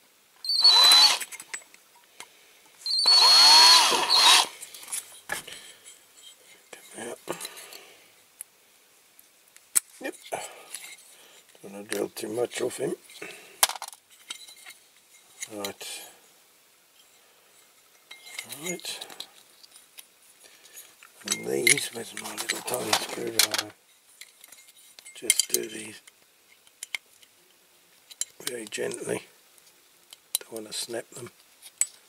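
A small electric drill runs in two short bursts in the first few seconds, each with a high whine that rises and falls as it spins up and winds down, drilling out the plastic driver figure riveted into a diecast toy road roller. Quieter, intermittent handling sounds of the work follow.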